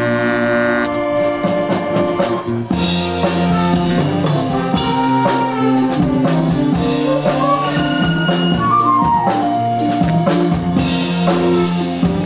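School concert band playing: brass, clarinets and saxophones sounding sustained chords and melody over a steady drum-kit beat.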